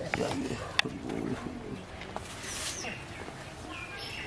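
Faint murmur of distant voices with a few short high bird calls near the end, and one sharp click about a second in.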